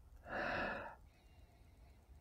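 A single sniff, a breath drawn in through the nose lasting under a second, as a man noses a glass of whisky.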